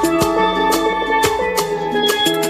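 Recorded music with a steady drum beat under held melodic notes.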